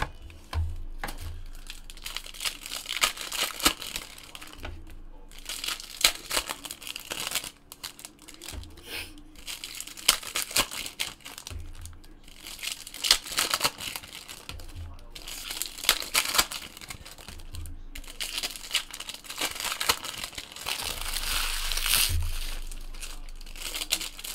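Wrappers of trading-card packs being torn open and crinkled by hand, in repeated crackly bursts every few seconds, with light handling thumps of packs and cards on the table between them.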